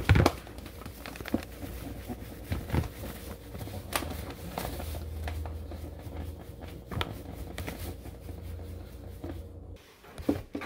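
Paper bag of instant corn masa flour crinkling and rustling as the flour is poured out into a plastic bowl, with several sharp crackles of the paper.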